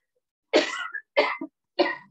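A woman coughing three times in quick succession, into her fist.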